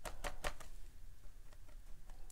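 A few light clicks and taps, quick and close together in the first second, as a sea sponge is dabbed into gouache on a palette, then faint handling noise.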